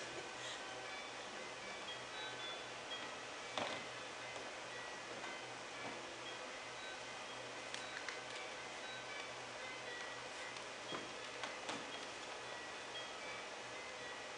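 Soft, sparse chime-like tones of ambient music, scattered high notes ringing briefly one after another over a low steady hum, with a few small clicks.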